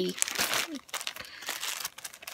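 Clear plastic bead bags crinkling as hands sort through them, in irregular bursts.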